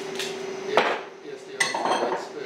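Two sharp metallic clanks about a second apart, the second ringing briefly, over a steady machine hum.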